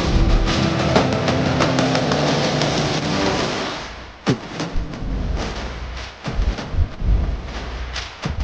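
Music with many instruments and a beat, fading out about four seconds in; then a falling pitch sweep and several deep, booming drum hits.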